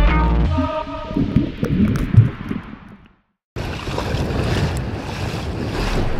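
Muffled underwater sounds of a swimmer moving through the sea, then after a short dropout, wind noise on the microphone over shallow water at the surface.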